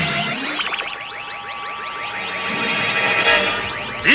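Synthesized electronic music or sound effect: a rapid cascade of short falling tones with echo, over a few steady held notes.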